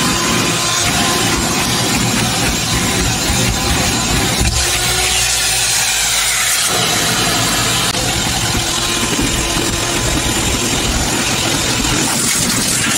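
Vacuum cleaner running steadily and loudly, sucking dirt from a car's floor carpet, its tone shifting for a couple of seconds near the middle.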